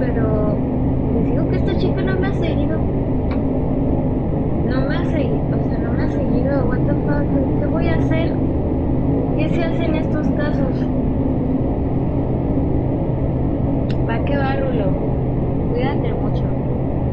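A steady low rumble with a constant hum runs throughout, with short snatches of a voice coming and going over it.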